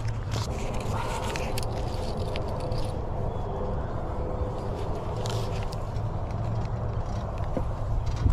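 A steady low outdoor rumble with a faint held tone in the middle, broken by a few light knocks of objects being handled.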